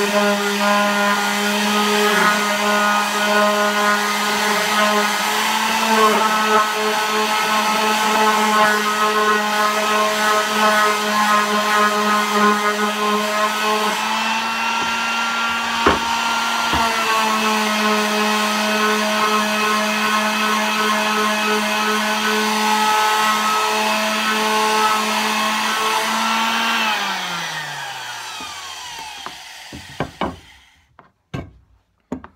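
Electric square-pad palm sander running steadily against a wooden canvas frame, with a couple of sharp knocks about halfway through. Near the end it is switched off and its whine falls in pitch as the motor winds down.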